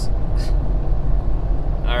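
Steady low drone of engine and road noise inside a pickup truck's cab, cruising at highway speed in ninth gear while towing a heavy trailer. A brief hiss comes about half a second in.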